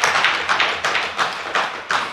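Members of the House applauding with a rhythmic beating of hands, about three strokes a second, dying away near the end.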